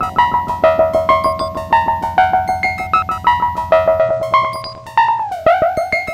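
Synton Fenix 2d modular synthesizer playing a repeating run of short, bright notes, about five a second, through its delay set to the longest delay time with no CV applied; the echoes overlap the dry notes. About five seconds in, the notes bend briefly downward in pitch.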